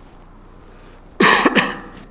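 A man coughing twice to clear his throat, two short harsh coughs about a second in, loud and close to the microphone.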